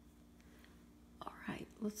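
A quiet room with a low steady hum. About a second in, a woman starts to speak.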